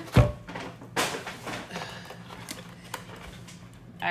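Tissue paper and a shopping bag being handled as a candle jar is dug out: a sharp thump just after the start, a click about a second in, then lighter rustling and a few faint taps.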